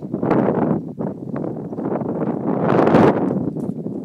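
Wind buffeting the microphone, a rushing noise that swells to its loudest about three seconds in. Under it, a horse's hoofbeats thud softly on the sand arena.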